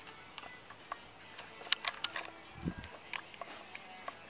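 Scattered light clicks and ticks with a soft low thump about two and a half seconds in: handling noise from a hand-held camera being swung around.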